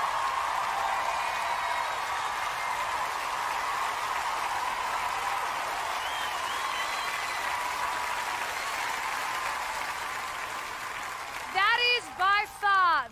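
Studio audience applauding and cheering, steady and slowly easing off. A woman starts talking near the end.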